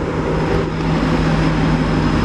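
A steady engine drone with a constant low hum, unchanging in loudness.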